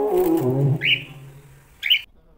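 Soft background music fading out, with two short bright rising chirps from a cockatiel, one a little under a second in and one near the end.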